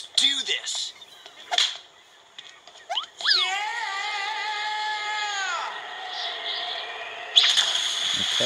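Cartoon soundtrack: a long, slightly wavering pitched note lasting about two and a half seconds in the middle, then a loud rush of water noise starting near the end.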